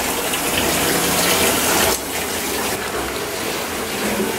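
Bath tap running into a partly filled bathtub: a steady rush of water that drops in level about halfway through.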